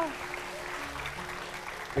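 Studio audience applauding steadily, with soft background music underneath.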